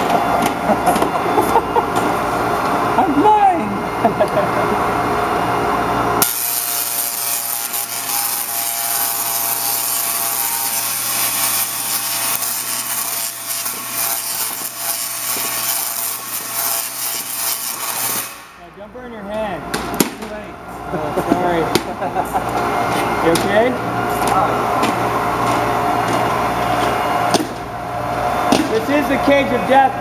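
Large Tesla coil firing for about twelve seconds, from about six seconds in until it cuts off suddenly: a loud, harsh buzz of high-voltage arcs striking a man in a metal Faraday suit. People's voices are heard before and after it.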